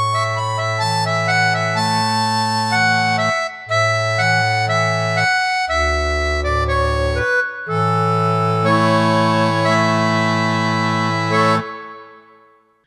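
Vault Caesar MK2 digital piano played with a sustained, organ-like voice: held chords over a moving bass line, each note staying level instead of fading the way a piano note does. There are two short breaks between phrases, and the playing stops just before the end.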